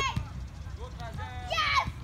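Children's high-pitched voices calling out on an open training field, with one short call about a second in and a louder shout near the end.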